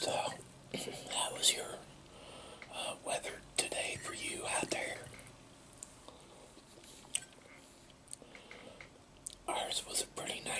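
Close-miked chewing of a ham and egg sandwich, with wet mouth sounds in irregular bursts. The bursts are loudest in the first second or two and between about three and five seconds in, and pick up again near the end.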